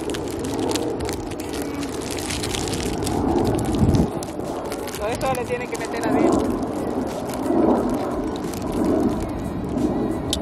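Wind buffeting the microphone outdoors, a steady low rumble with crackling, and muffled voices talking under it.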